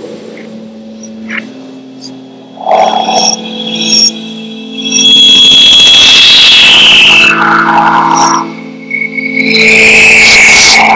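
Improvised experimental live music: a steady low drone under scraping knocks, swelling about halfway through into a loud wash of noise with high, slowly falling tones.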